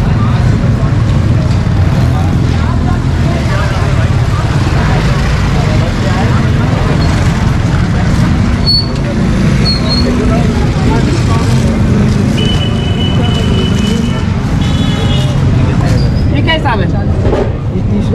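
Busy street ambience: a steady low rumble of road traffic under people talking nearby. A short high tone sounds twice a little past the middle.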